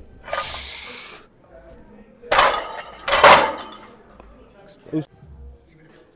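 A lifter ending a warm-up set of barbell back squats and racking the loaded bar: two loud bursts about two and three seconds in, then a short knock about five seconds in.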